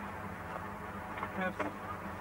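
A steady low electrical hum with a buzzing edge runs throughout, and a man's voice starts about halfway through.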